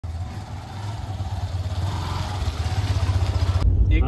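Motor scooter engine running steadily, a low pulsing rumble that grows gradually louder, then cuts off suddenly near the end.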